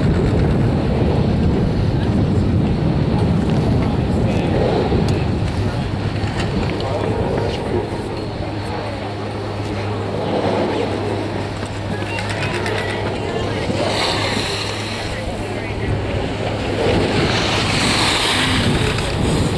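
Busy chairlift loading area: a high-speed detachable chairlift running, with a loud, continuous rumbling noise and background voices, and a steady low hum joining about six seconds in.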